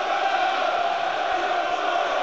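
Football stadium crowd chanting a player's name in unison, a steady, sustained sound from thousands of voices.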